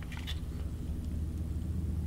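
Low, steady background hum, with a few faint clicks in the first half second as hands handle a Sig P365 XL pistol's slide and frame.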